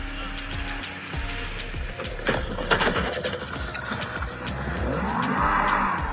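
Small boat's outboard motor running at speed, its pitch rising and falling, with water rushing and spraying, under background music.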